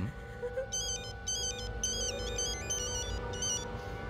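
Mobile phone ringing with an electronic ringtone: a short melody of stepped beeps that starts about a second in and stops just before the end, over low background music.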